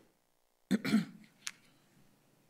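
A person briefly clearing their throat, followed about half a second later by a short, sharp click.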